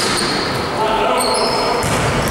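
Basketball game on an indoor court: the ball bouncing and sneakers squeaking on the floor, echoing in a large sports hall.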